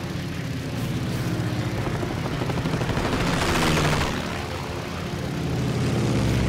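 Sound-effect WWII piston-engine fighters running with rapid gunfire, swelling to a rushing peak three to four seconds in as the planes meet head-on.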